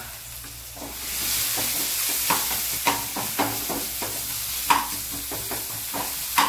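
Onion, cumin and ginger-garlic paste frying in hot oil in a small pan as a tempering (tadka) for dal, sizzling steadily and growing louder about a second in. A metal spoon stirs the pan, clicking and scraping against it.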